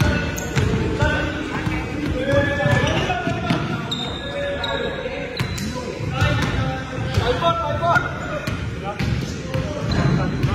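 Basketballs bouncing on a hardwood gym floor, a string of sharp, irregular thuds from dribbling, with players' voices calling out among them.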